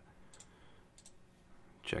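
Two faint computer mouse clicks, a little over half a second apart.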